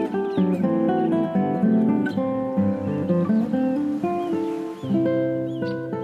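Solo classical guitar playing slow plucked notes that overlap and ring on, with short bird chirps above it several times.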